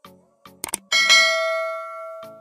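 Sound effect of a subscribe-button animation: a couple of quick mouse-style clicks, then a bell chime about a second in that rings and slowly fades.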